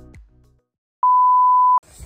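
Outro music fades out, then after a brief silence a single loud, steady electronic beep, a pure tone under a second long that starts and stops abruptly, like an edited-in censor bleep.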